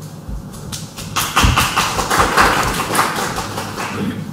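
Group of people clapping, starting about a second in and going on to the end, with a few dull thumps just before it starts.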